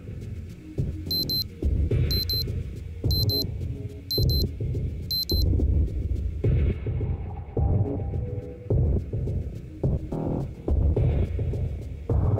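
Electronic alarm beeping: five short bursts of high beeps, about one a second, that stop about five seconds in. Underneath runs background music with a low throbbing pulse.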